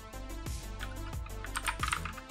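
Computer keyboard keys being typed, a few keystrokes about a second in and a quicker run near the end, over soft background music.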